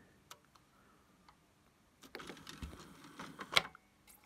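CD player transport ticking and whirring faintly as the disc spins up and the laser pickup seeks, starting about halfway through, with one sharper click near the end. The drive is reading the disc again after a small turn of the laser power trimmer.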